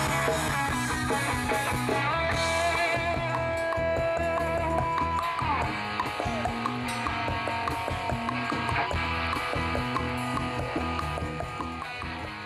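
Rock band playing, led by electric guitar holding long notes with a slide about halfway through, over a full band. The music fades out near the end.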